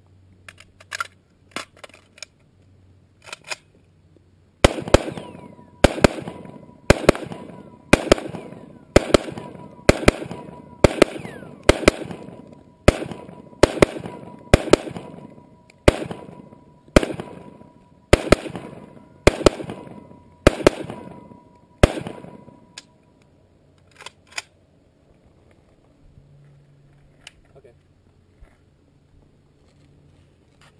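Polish Tantal AK-74 sporter rifle in 5.45x39 fired one round at a time, about twenty sharp shots at roughly one a second, each with a short echo, after a few lighter clicks at the start. The shooting stops about two-thirds of the way in, and one lighter bang follows a couple of seconds later.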